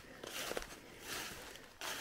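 Footsteps through dry fallen leaves on a forest floor: two steps about a second apart.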